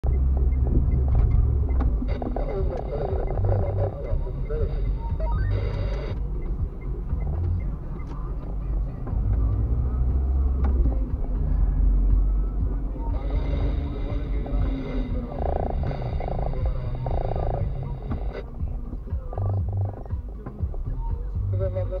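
Steady low rumble of a car's engine and tyres heard from inside the cabin while driving slowly.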